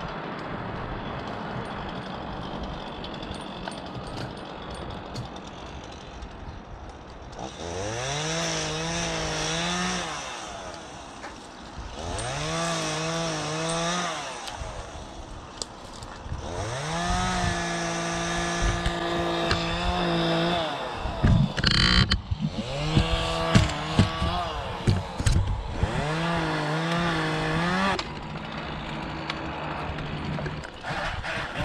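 Chainsaw revving up from idle to full speed and holding there, five times, each burst lasting two to four seconds before dropping back, as in cutting limbs. A burst of sharp cracks comes about two thirds of the way through.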